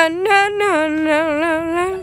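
A high voice singing long held notes with a slight wobble, moving up and down in steps like a short melody, then cutting off suddenly at the end.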